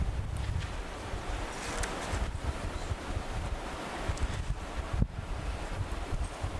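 Steady rushing noise with a low rumble, picked up on an open lecture microphone, with a faint tick about five seconds in.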